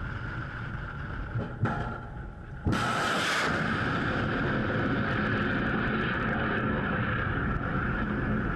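Missile launch from a warship: a sudden loud blast about three seconds in as the booster motor fires, followed by a steady loud rushing of rocket exhaust for several seconds. Before it, steady wind noise on deck.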